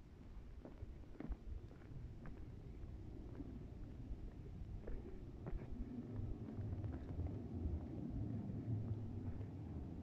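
Wind buffeting a phone microphone: an uneven low rumble that grows stronger in the second half, with scattered light clicks of handling.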